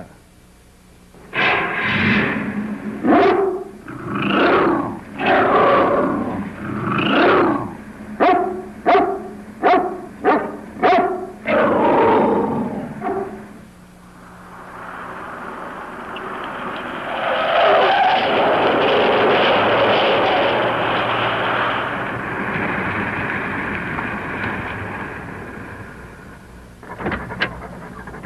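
A large dog barking repeatedly, about a dozen barks that come shorter and quicker toward the middle. Then a steady rushing noise swells and fades over the second half.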